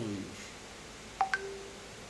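A quick electronic beep sequence about a second in, like a phone tone: two clicky blips in quick succession, the second higher, then a short lower tone.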